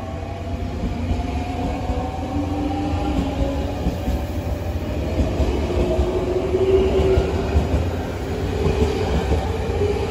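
JR Central 383 series electric limited-express train pulling away and accelerating past, its electric traction motors whining in tones that rise slowly in pitch over a steady low rumble of wheels on rail.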